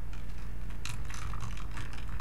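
Garbled, broken-up audio from a video call: a rapid, irregular run of crackles over a steady low hum, where the remote caller's voice is not coming through clearly over a poor connection.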